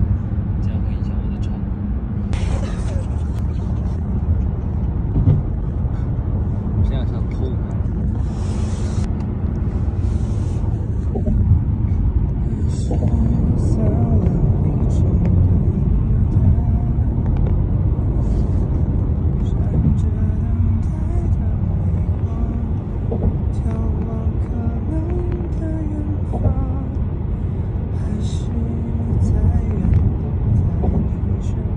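Steady low rumble of a car driving on the road, heard from inside the cabin, with a man singing a Mandarin ballad unaccompanied over it from about halfway through. The rumble is the louder sound and the singing voice is faint beneath it.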